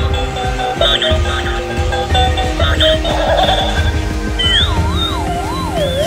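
Battery-operated tumbling monkey toy playing its electronic music tune with a steady beat, a wavering siren-like warble joining it over the last second and a half.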